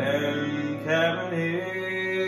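Grand piano playing sustained jazz chords, with a man's voice holding a wavering sung note over them about a second in.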